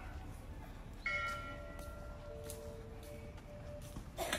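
A small metal bell struck once about a second in: several high ringing tones start together and fade within about half a second, while lower tones hum on to the end, over a steady low background noise.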